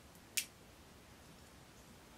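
A single short, sharp plastic click about half a second in, from a small sliding part on a sixth-scale toy AR-15 rifle being pushed in or out by hand.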